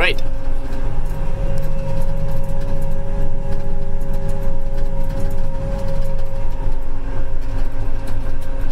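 Apache self-propelled sprayer's diesel engine running steadily while the machine creeps through the field, heard from inside the cab: a low drone with a constant high whine over it.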